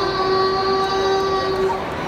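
A young boy singing, holding one long steady note that breaks off just before the end.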